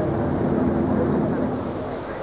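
A steady engine-like drone with a couple of held low tones over an even background noise. The tones fade out past the middle and the overall level eases slightly near the end.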